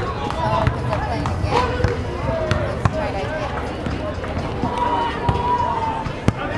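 Outdoor three-on-three basketball game: people's voices talking and calling out across the court, with scattered sharp knocks of a basketball hitting the pavement.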